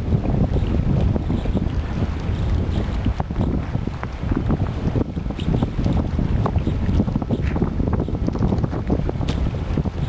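Wind buffeting the microphone: a loud, gusty low rumble that rises and falls irregularly, with no steady engine tone.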